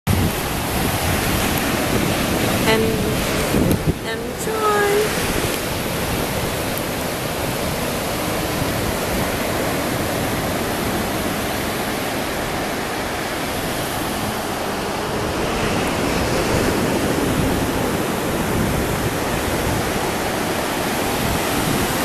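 Ocean surf breaking and washing up on a sandy beach: a steady rush of noise.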